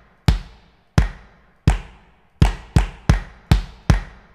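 Software drum kit (Addictive Drums) kick drum layered with a triggered hand-clap sample, hit eight times. The hits come slowly at first and faster in the second half.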